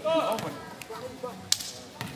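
One sharp smack of a volleyball about one and a half seconds in, after a brief shout at the start.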